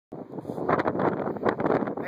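Wind buffeting the microphone, an uneven rushing noise that starts a moment in and rises and falls.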